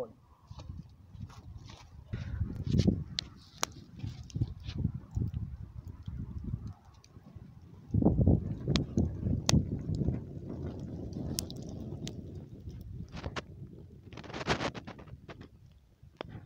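Wood fire burning in a brick pit, with scattered sharp crackles and pops. Uneven low rumbling noise on the microphone runs underneath and is loudest in the second half.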